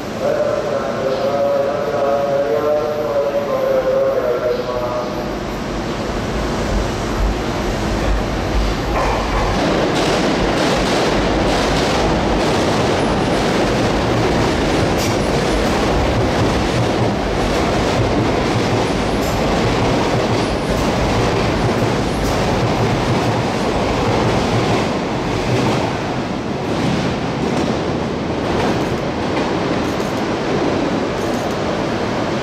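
Sotetsu electric commuter train running past close by, a steady rumble with its wheels clicking over rail joints and points from about nine seconds in. A wavering pitched sound is heard for the first five seconds.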